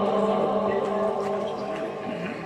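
Male religious chanting (Egyptian ibtihal) through a loudspeaker system: a long held note fades away with hall echo, then softer wavering, ornamented notes follow.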